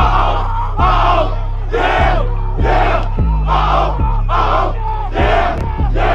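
A football team huddled and shouting together in rhythmic bursts, about once a second, over a music track with a heavy, deep bass beat.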